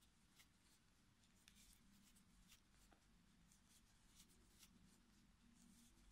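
Near silence: faint scattered ticks and rustles of a crochet hook pulling yarn through stitches, over a low steady room hum.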